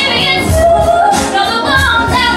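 A woman singing into a microphone over backing music, holding long notes with a slight waver in pitch.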